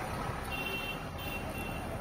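Steady rumble of a moving auto-rickshaw's engine and road noise, heard from inside the passenger cabin. A faint, brief high tone sounds about half a second in.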